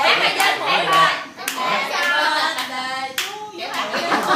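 Hand clapping in a steady beat, about two claps a second, with voices over it.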